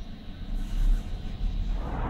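Low, steady rumble of a glass passenger lift car in motion, growing a little stronger about half a second in.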